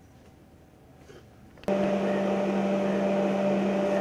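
Steady machine hum with a low and a higher constant tone over a rushing noise, starting abruptly about a second and a half in after near quiet.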